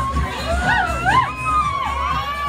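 Dance music with a steady beat playing for a group dance, with voices whooping and shouting over it about half a second in.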